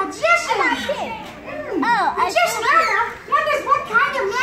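A crowd of young children in an audience shouting and calling out together, many high voices overlapping.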